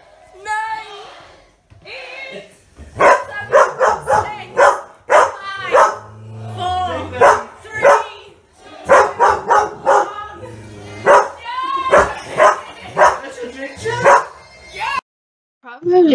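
A dog barking loudly and repeatedly, about two barks a second, over music and voices from a TV. The sound cuts off suddenly near the end.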